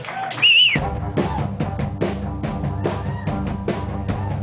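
Live rock band kicking into a song: drum kit and bass come in about a second in and settle into a steady beat with regular snare and kick hits, just after a short high warbling tone.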